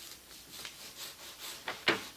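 Small hand roller rolling glue back and forth over thin wood veneer: a faint wet rubbing in repeated strokes, with two short sharper clicks near the end.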